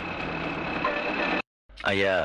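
Steady engine and road noise of a moving auto-rickshaw with a thin, steady high whine, cut off sharply a little under a second and a half in. After a short gap a man starts speaking.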